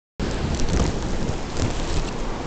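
Ocean surf rushing, overlaid with low rumbling and a few bumps of handling noise on the camera's microphone as the camera is moved.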